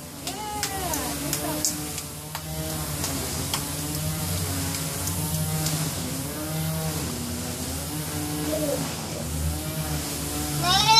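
A low, drawn-out hummed voice, unbroken and slowly wavering in pitch, with a few light clicks in the first few seconds.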